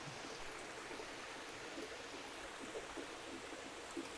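Water running in a faint, steady trickle from a supply valve just opened over a plastic fish-breeding vat.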